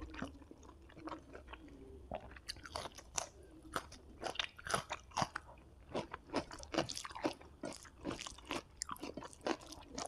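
Close-miked chewing of a hand-fed mouthful of rice and squid roast: a quick run of wet mouth clicks and smacks, sparse at first and much denser from about two and a half seconds in.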